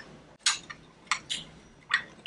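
A thin wooden stick stirring a green powder drink in a small glass, scraping against the inside of the glass in a few short strokes to break up clumps of powder.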